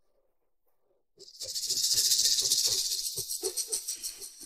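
A rhythmic rattling hiss, like a shaker, sets in about a second in and lasts about three seconds.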